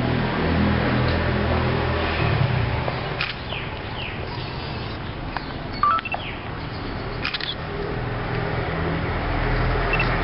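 Outdoor background noise: a steady low rumble, a few short falling chirps about three to four seconds in, and scattered sharp clicks, the loudest just before six seconds.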